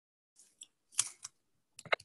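A handful of short clicks and taps from computer keys, heard over a video-call microphone. The loudest comes about a second in, with a quick double click near the end.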